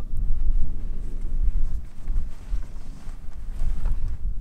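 Wind buffeting the microphone outdoors: a low, gusting rumble that rises and falls in strength.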